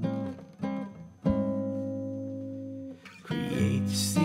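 Archtop guitar strummed: two short chords, then a chord struck about a second in that rings for over a second and a half before stopping. After a brief gap, more chords follow near the end.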